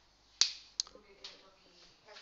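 Two sharp clicks just under half a second apart, the first one loud, followed by faint murmured speech.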